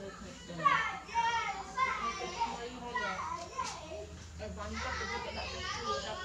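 Children's voices talking and calling in the background, several high voices through the whole stretch.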